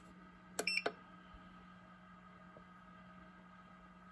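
An egg candler gives a brief electronic beep about half a second in as it is switched on, over a faint steady hum.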